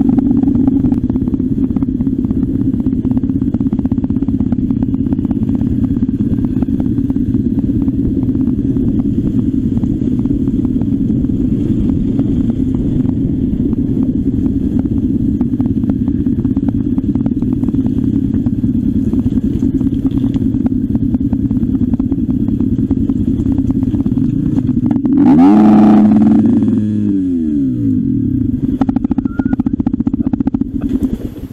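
Trail motorcycle engine running steadily under way. Near the end it revs up louder, then the revs fall away.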